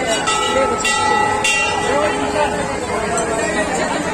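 Dense crowd chatter and hubbub, with a steady pitched tone, like a horn or toy trumpet, held for about three and a half seconds over it.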